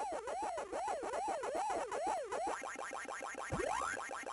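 Pac-Man arcade game sound effects: an electronic warbling tone rising and falling about three times a second, then a busier run of blips with one long rising sweep near the end.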